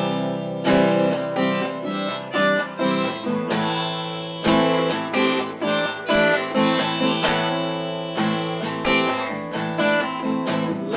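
Harmonica played in a neck rack over a strummed guitar: an instrumental break with no vocals, the harmonica holding long notes above steady chord strums.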